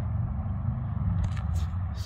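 Steady low outdoor rumble, with a brief scraping rustle a little over a second in as the handheld chromatic filter is taken away from the phone's lens.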